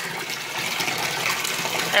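Bath tap running into a filling bathtub, water pouring and churning steadily as it whips crumbled bubble bar into foam.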